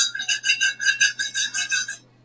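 A high warbling tone made of several pitches at once, pulsing about seven times a second, starting and stopping abruptly.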